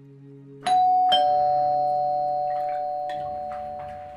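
Two-note ding-dong doorbell chime: a higher note about two-thirds of a second in, then a lower note half a second later, both ringing on and fading slowly over about three seconds.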